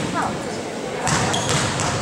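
A basketball bouncing on an indoor court floor as a player dribbles it at the free-throw line, over voices in the gym.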